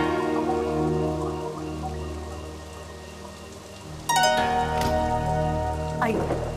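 Background music score: a chiming, sustained chord that fades slowly over a low steady drone, with a second chord struck about four seconds in, over a steady hiss of rain.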